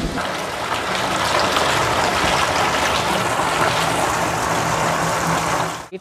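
Water pouring steadily from the spouts into a spring-fed bathing pool, a continuous rushing splash that stops abruptly near the end.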